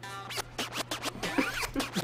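DJ turntable scratching over a party music track, in quick rhythmic strokes with swooping pitch.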